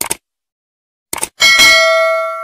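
Subscribe-animation sound effects: a quick double click, another double click just after a second in, then a bell ding ringing on in several steady tones, the notification-bell chime.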